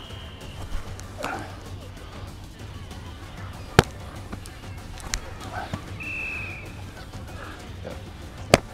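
Rugby ball slapping into the hands as it is caught during a passing drill: a few single sharp slaps, the loudest about four seconds in and a fainter one about five seconds in.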